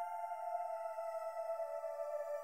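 Background music: a sustained electronic drone, one held tone with many overtones that glides slowly down in pitch.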